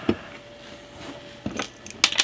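A Raspberry Pi 4 board being pressed into its plastic case: a sharp click at the start, then a couple of quieter plastic clicks about a second and a half in as the board snaps into place.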